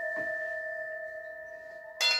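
Brass singing bowl ringing after a strike, a low and a higher tone held together and slowly fading.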